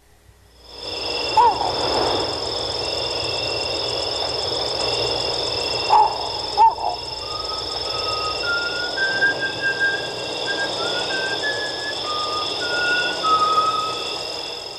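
Night-time tropical ambience: a steady high insect trilling over a soft hiss, with a few short chirping calls about a second and a half in and again around six seconds. From about eight seconds a slow run of single high, whistle-like notes steps up and down as a simple tune.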